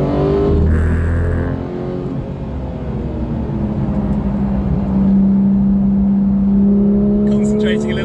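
Sports car engine heard from inside the cabin under track driving. It dips briefly about two seconds in, then holds a steady, louder note.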